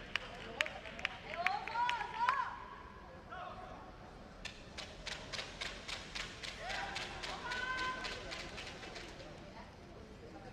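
Indoor sports-hall sound: voices at a distance, a few sharp taps, then a quick even run of taps, about four or five a second, through the second half.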